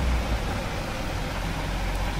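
Steady background hiss with a low hum underneath: room tone, with no distinct event.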